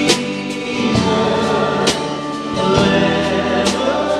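Live worship band playing a slow hymn on drum kit and guitars, with a group of voices singing along. Cymbal strikes land about every two seconds over the held notes.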